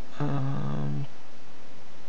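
A man's drawn-out hesitation sound, "euh", held on one steady pitch for under a second, over a constant background hiss.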